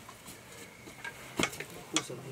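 A few short, sharp clicks or knocks over a low background hiss, the loudest about a second and a half in and another just before the end.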